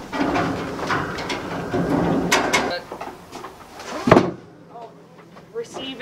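Handling noise from a camouflage fabric pop-up hunting blind being moved: rustling fabric and clattering frame poles with footsteps on a wooden deck for the first two and a half seconds, then a single sharp knock about four seconds in.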